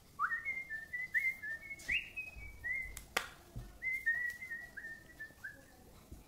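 A man whistling a tune: a run of short, clear notes with a brief break about halfway, when a single sharp click is heard.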